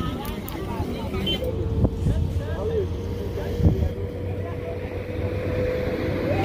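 Busy roadside street sound: vehicles running past and background voices of people nearby, with a few light knocks. A steady thin tone joins about a second and a half in and holds through the rest.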